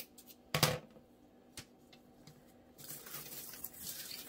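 A few sharp clicks and a short clack in the first second or so from scissors being worked, then soft rustling from about three seconds in as artificial flowers and picks are handled in the basket.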